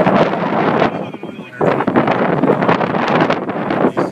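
Background chatter of a crowd of people talking, with wind buffeting the phone's microphone.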